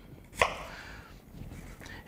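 A kitchen knife cutting a cored apple into quarters: one sharp knock of the blade on the cutting board about half a second in, then a faint scrape as the blade moves through the fruit, with a few light taps near the end.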